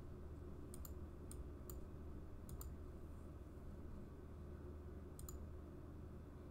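Computer mouse clicking: several faint, sharp clicks, some in quick pairs, over a low steady hum.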